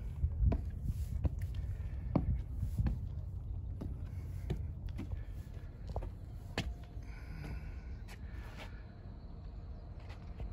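Footsteps climbing stone stairs, a scatter of irregular taps and scuffs, over a low rumble of wind on the microphone.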